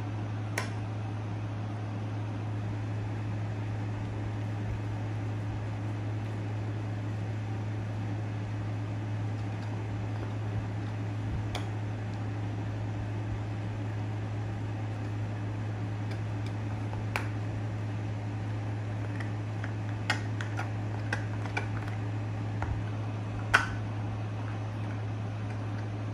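A pit bull terrier chewing a chew toy, its teeth giving scattered sharp clicks a few seconds apart that come more often near the end, the last one the loudest. A steady low hum runs underneath throughout.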